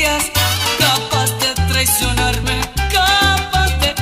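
Salsa music from a DJ mix, with a prominent bass line moving through separate low notes under the band.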